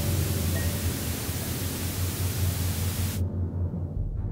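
Loud television-static hiss over a low, pulsing drone. The hiss cuts off suddenly about three seconds in, leaving the drone alone.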